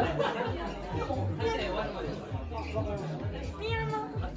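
Audience chatter between the MC's announcements, over quiet background music with a low bass line.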